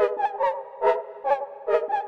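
Software synthesizer (Arturia Analog Lab V) playing back a simple melody: short plucked notes about two a second over sustained chord tones, with no bass or drums.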